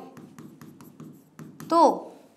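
Handwriting on a board: quick taps and scratches of the writing tip as a line of letters is written, with one short spoken word near the end.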